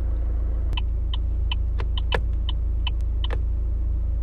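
Vauxhall Astra J turn-signal tick from the small add-on chime speaker that comes with the Android head unit: short, evenly spaced clicks about two and a half a second, over a steady low rumble.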